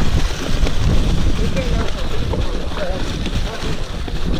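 Wind rumbling over an action camera's microphone as a mountain bike rolls fast down a trail covered in dry leaves, with the tyres running over the leaves and scattered knocks and rattles from the bike.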